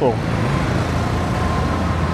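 A motor vehicle's engine running close by in street traffic: a steady low rumble with a faint steady whine above it.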